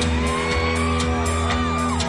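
A live rock band playing: electric guitars over a heavy low end, with a steady drum beat.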